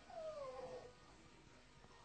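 A short, faint cry that falls in pitch, lasting under a second near the start.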